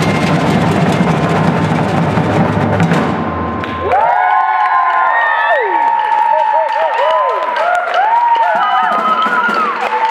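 A maracatu drum ensemble plays a dense, loud groove on rope-tensioned alfaia bass drums and a snare-type caixa, then stops abruptly about four seconds in. The audience then cheers and whoops with rising and falling voices, and claps.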